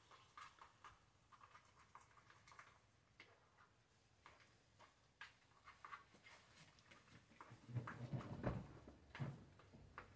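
Faint scraping and clicking of a plastic spoon stirring stuffing in a pot, louder for a couple of seconds near the end.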